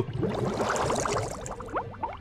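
Cartoon underwater bubbling sound effect, used as a scene transition: a rush of bubbles with many quick rising bubble blips, fading out in the second half.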